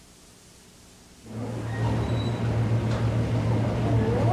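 Faint hiss, then a little over a second in, busy bakery-shop room noise cuts in abruptly over a steady low hum.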